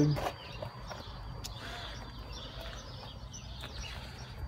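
Quiet outdoor background: a steady low rumble with a few faint, indistinct calls in the middle, after a man's voice trails off at the start.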